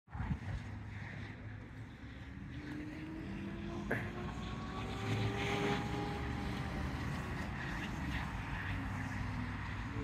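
Steady traffic noise from a busy road, with wind on the microphone. A faint vehicle hum swells and slowly shifts in pitch through the middle, and there is a single click about four seconds in.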